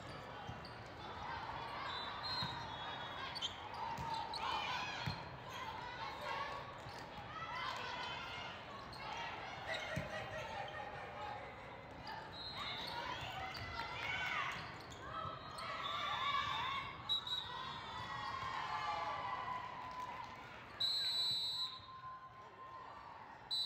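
Volleyball being played in a large, echoing hall: players calling and spectators talking, with a few sharp slaps of the ball on hands and floor. Near the end a referee's whistle blows, ending the rally.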